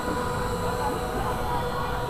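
Rotating helicopter gondola ride in motion, heard from on board: a steady low rumble of the moving ride with a faint steady hum.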